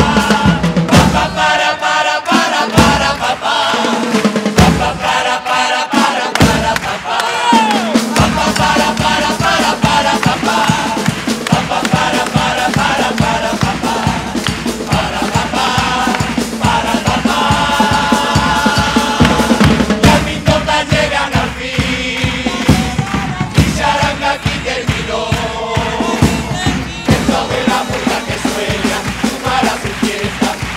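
Live carnival charanga band, brass with bass drum and snare, playing an upbeat tune together with a group of voices. Short stabs give way after about eight seconds to a steady drum beat that carries on to the end.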